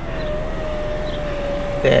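Car power-window motor running, a steady thin whine over the low rumble of the idling car.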